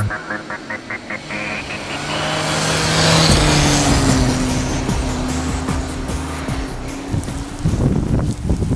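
Rally car driven hard on a snowy road, engine rising as it approaches, dropping in pitch as it passes close by about three seconds in, then pulling away on a steady engine note.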